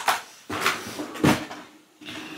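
Three short clattering, rustling handling sounds about half a second apart, the last the loudest: makeup products being picked up and moved about.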